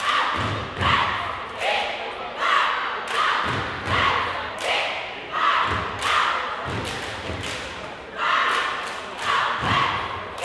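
A cheer squad chanting in unison with stomps on a wooden gym floor, in a steady rhythm of shouted lines a little faster than once a second, deep thumps under many of them.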